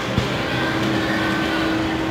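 Shopping cart rolling along a supermarket floor: steady noise with a low hum underneath, and a single click shortly in.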